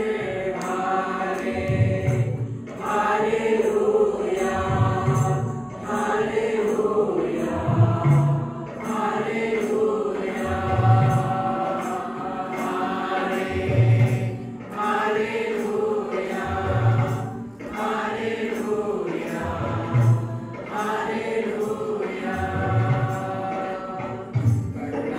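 A group of young people singing a gospel praise-and-worship song together through a microphone, with a low bass note about every three seconds.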